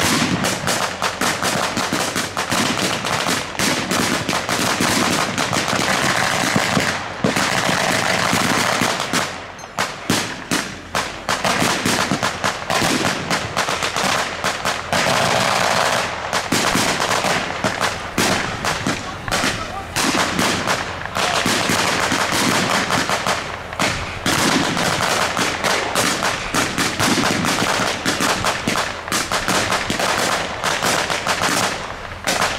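Blank-firing WWII rifles and machine guns: many overlapping shots and bursts, nearly continuous, easing briefly about nine to ten seconds in.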